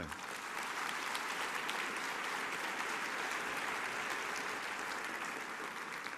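Audience applauding steadily, dying down near the end.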